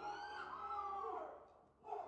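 A voice calling out in one long, high, gliding call that dies away about a second and a half in.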